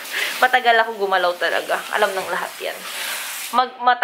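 People talking indoors over a steady hiss; the hiss cuts off suddenly near the end as a new stretch of talk begins.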